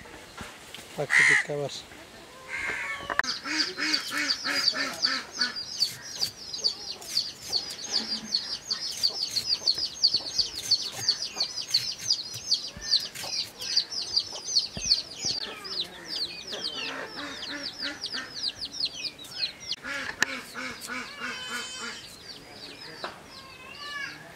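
Domestic fowl calling. A long, dense run of quick, high chirping calls, several a second, starts about three seconds in and fades about twenty seconds in. Lower, coarser repeated calls come at the start of that run and again near the end.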